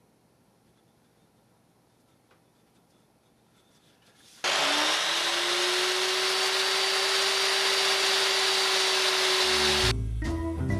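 Electric miter saw switched on about halfway through: the motor whines up quickly and then runs at a steady speed. Before that, near silence.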